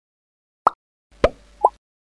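Three short plop sound effects from an animated logo intro, each a quick drop in pitch. The last two come about half a second apart.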